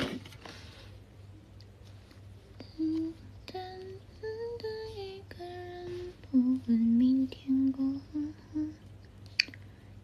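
A woman humming a slow tune with her mouth closed: a string of held notes stepping up and down, starting about three seconds in and stopping near the end.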